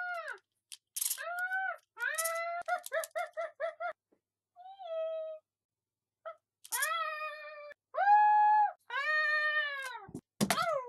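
Talking Scrat toy sounding its recorded squeals and chatter: a string of high, wavering cries broken by silent gaps, with a quick run of about six short chirps a second around three seconds in and longer held wails toward the end.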